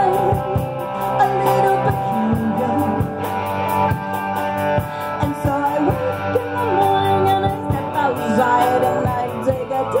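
A live rock band playing: a woman singing over electric guitar, bass guitar and a steady drum beat.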